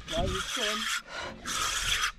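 Spinning fishing reel being cranked hard to bring a coral trout up, giving two rasping bursts: one about a second long, then a shorter one near the end.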